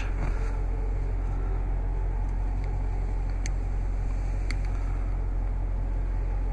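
Steady low droning rumble inside a car's cabin, with a few faint light clicks scattered through it.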